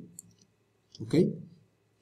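A few faint, light clicks of computer input as text is selected and pasted in an editor, followed by a short spoken "Ok".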